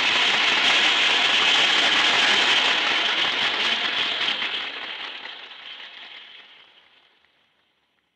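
Audience applause, steady for about four seconds and then fading out.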